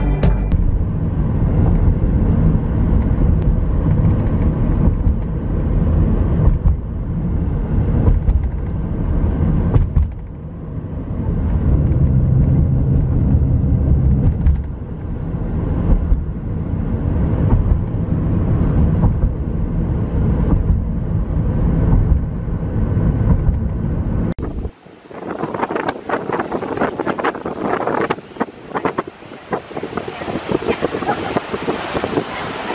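Steady low road rumble of a car heard from inside the cabin while driving. About 25 seconds in it cuts abruptly to wind buffeting the microphone over the wash of surf breaking on a beach.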